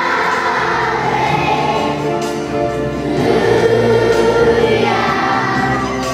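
Children's choir singing a Christmas song, swelling on a long held note about halfway through.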